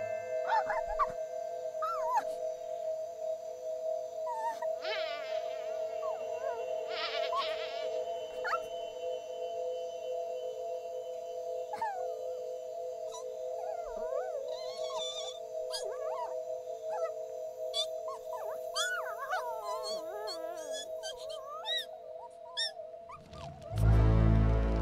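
Small cartoon creature's whimpers and short squeaky cries, scattered and gliding up and down in pitch, over a steady held two-note music drone. A louder change comes just before the end.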